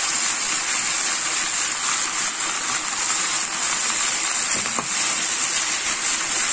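Swiss chard leaves sizzling steadily in hot oil with garlic in a nonstick frying pan.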